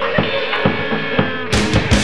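Drum kit struck in a steady rhythm of bass and snare hits over a playing song, sounding dull and muffled. About one and a half seconds in it cuts suddenly to a louder, brighter full-band rock track.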